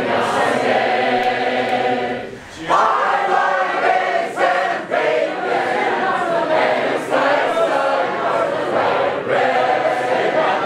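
A large crowd of mixed men's and women's voices singing a three-part round together, unaccompanied, with a brief drop for breath about two and a half seconds in.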